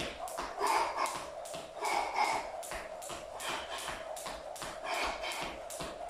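Jump rope skipping on a tiled floor: a steady run of light slaps from the rope striking the tiles and the shoes landing, about three to four a second.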